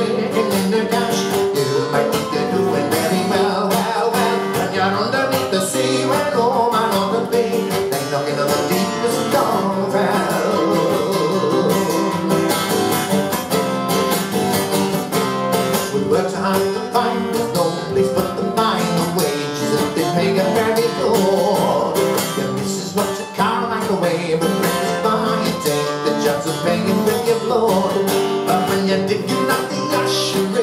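Live folk music: an acoustic guitar strummed with a mandolin playing along.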